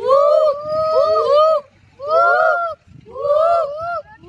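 Several children imitating monkeys, calling out together in overlapping, arching cries, in four loud bursts with short gaps between.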